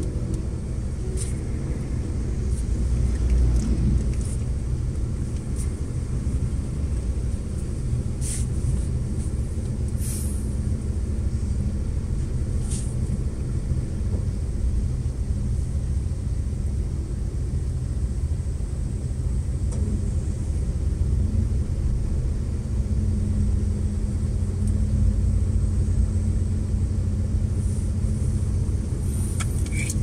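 Steady low rumble of car engines idling in stopped traffic, with a few brief faint clicks.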